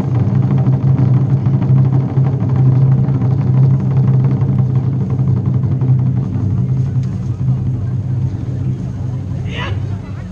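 Taiko drums played in a sustained, rapid roll that makes a steady low rumble. It tails off near the end.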